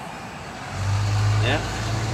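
A low, steady engine hum starts suddenly about three quarters of a second in and holds.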